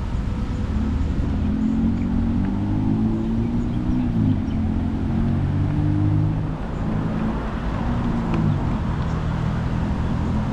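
Road traffic: a motor vehicle's engine accelerating through its gears, its pitch climbing and then dropping at each shift, about three times.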